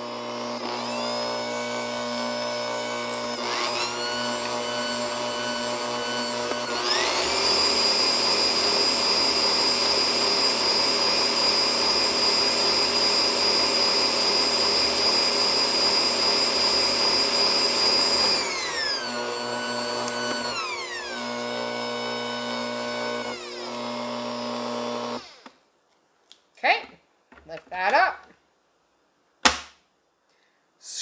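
Bosch Compact kitchen machine's electric motor whining as it beats cake batter until smooth. It is stepped up in speed twice early on, held at a high whine, then stepped back down and switched off suddenly about 25 seconds in.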